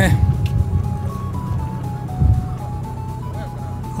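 Background music: a simple melody of single clear notes stepping up and down, over a low steady rumble, with a brief low thump about two seconds in.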